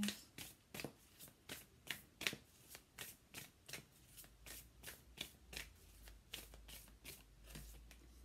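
A large deck of divination cards being shuffled by hand: a quick, even run of soft card flicks, about four a second.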